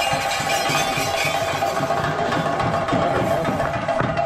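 Theyyam ritual percussion: chenda drums beaten in fast, dense strokes with a steady ringing layer above, going on without a break.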